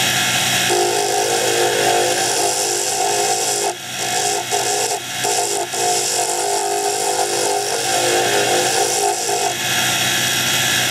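Wood lathe running steadily, spinning a wooden dart barrel, with hands sanding the spinning wood: a constant motor hum and whine under a high hiss, with a few brief dips in level around the middle.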